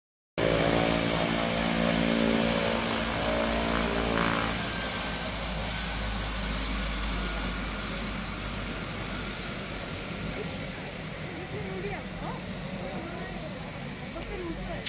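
de Havilland Canada DHC-6 Twin Otter's two turboprop engines and propellers running as the plane taxis past and away. A steady propeller tone is loudest for the first few seconds, then gives way to a rushing engine noise that slowly fades as the plane moves off.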